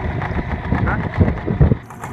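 Yamaha outboard motor idling, a steady low rumble, with a short exclamation from a man over it.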